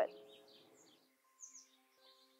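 Small birds chirping faintly: a few short, high chirps, the clearest about a second and a half in.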